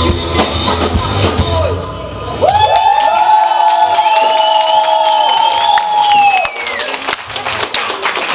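Live rock band playing with drums and bass, which stop about two and a half seconds in; a high held tone then rings on for about four seconds and fades, as the song ends.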